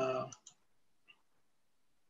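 A man's brief drawn-out 'uh' at the very start, then two faint computer-mouse clicks about half a second and a second in, before near quiet.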